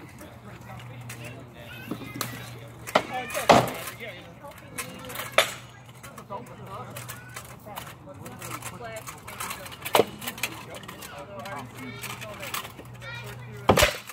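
Practice swords striking shields and armour in sparring: sharp cracks at about three and three and a half seconds in, single strikes at about five and ten seconds, and a quick double strike near the end.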